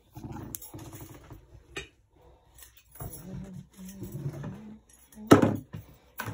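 Short stretches of wordless voice sounds, like humming or babbling, with a loud sudden sound about five seconds in.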